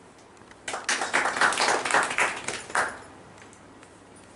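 A small group clapping briefly: a quick patter of hand claps starting about a second in and dying away after about two seconds.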